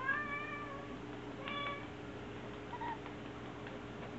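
Black kitten meowing in a high voice: one drawn-out meow of about a second, a shorter meow about a second and a half in, and a faint brief chirp near three seconds.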